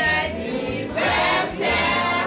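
Gospel music: a choir singing over a bass line with a steady beat.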